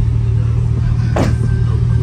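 Music with a sustained deep bass note played through two Sundown E-series 8-inch subwoofers in an extended-cab pickup, heard from outside the cab. A falling swoosh comes in the music a little past halfway.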